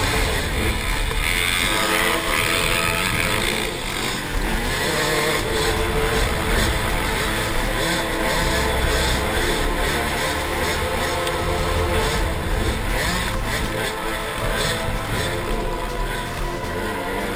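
KTM 200 XC-W single-cylinder two-stroke dirt bike engine running hard, its revs rising and falling continuously as it is ridden over rough desert trail, heard from a helmet-mounted camera with wind rushing over the microphone.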